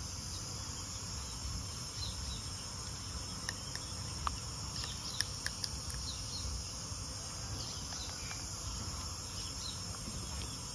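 Steady high insect chorus with short high chirps scattered through it. A quick run of sharp clicks comes about halfway through.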